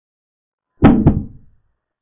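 Chess board sound effect for a capture: a wooden piece knocking onto the board. There are two quick knocks about a quarter second apart, a little under a second in, dying away within about half a second.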